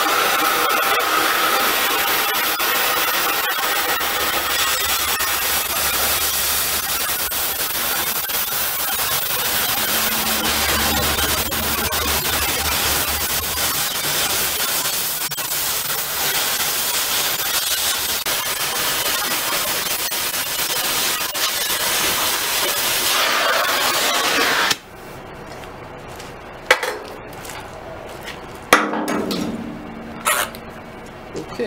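Oxy-acetylene cutting torch hissing steadily as it cuts through rusty steel tank plate, throwing sparks. About 25 seconds in the hiss stops suddenly, followed by a few sharp knocks.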